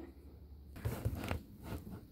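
Faint crinkling and tearing of a thin plastic bag as a pill organizer is unwrapped, in a few short rustles starting about a second in, with a light knock of the case being handled.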